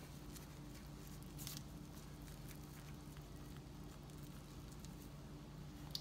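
Faint steady low hum with a few soft rustles of plastic-gloved hands rolling a stuffed grape leaf on a plastic cutting board, the clearest about one and a half seconds in.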